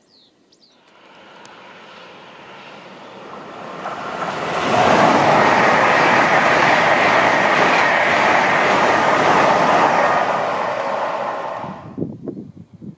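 LNER Azuma high-speed train passing through the station at speed: a rush of wheel and air noise that builds over about four seconds, stays loud for about six seconds as the carriages go by, and cuts off suddenly at the end.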